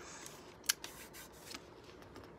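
Faint handling noise of a card and packaging: a few light clicks, with one sharper click about two-thirds of a second in.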